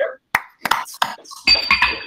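A few sharp, irregular clicks and knocks heard over a video-call line, followed near the end by a man starting to speak.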